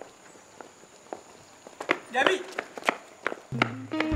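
High-heeled shoes clicking on pavement in a string of sharp separate steps. A short voice calls out about two seconds in, and low music notes come in near the end.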